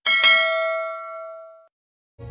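Notification-bell 'ding' sound effect from a subscribe-button animation: a bright bell strike, struck again about a quarter second later, ringing out and fading away within about a second and a half.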